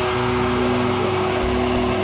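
Epiphone Les Paul Custom electric guitar in drop C tuning, played through a Marshall Valvestate amp with distortion: a held chord rings steadily, and low notes chug under it in the second half.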